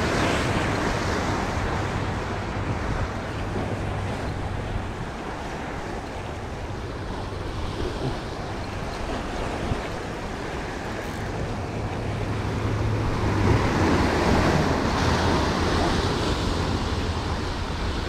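Ocean surf washing and breaking over shoreline rocks, with wind buffeting the microphone. The surf swells louder about thirteen seconds in.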